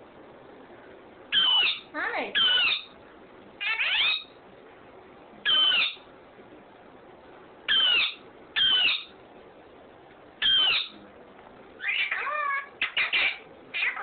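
Indian ringneck parakeet calling: short, loud calls, each falling in pitch, one every second or two and coming quicker near the end.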